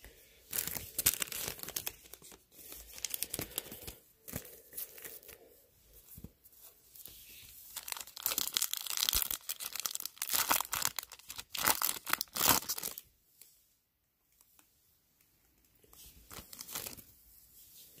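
A 2020 Topps Opening Day baseball card pack being torn open by hand, its wrapper ripping and crinkling in a string of bursts that stop about 13 seconds in, with a little more rustling near the end.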